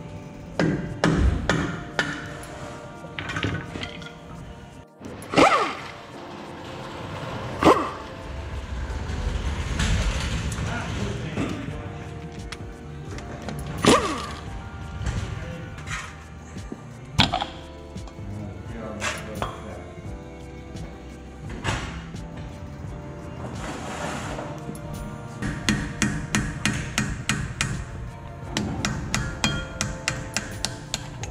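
Metal knocks and hammer strikes on a heavy truck's wheel hub, a dozen or so single hard hits spread out, then a quick run of light taps near the end, over background music.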